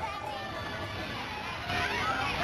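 Children's voices and shouts at a busy swimming pool, mixed with background music; the voices get louder near the end.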